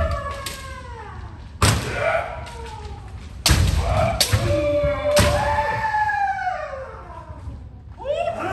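Kendo practice: several fencers' drawn-out kiai shouts, overlapping and falling in pitch, with four sharp strikes and thuds of bamboo shinai hitting armour and feet on a wooden floor, during a backward-stepping men strike (hiki-men) drill.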